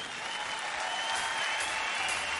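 A concert audience applauding, with a faint high note held steadily over it.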